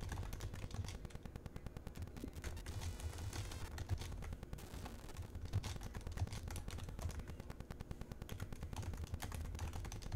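Typing on a computer keyboard: irregular runs of small key clicks, over a low steady hum.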